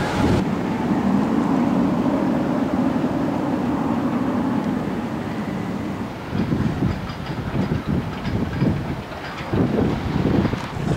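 Magnum XL-200 steel hypercoaster train rumbling along its track in a steady low roar that fades after about six seconds. It gives way to gusty wind buffeting the microphone.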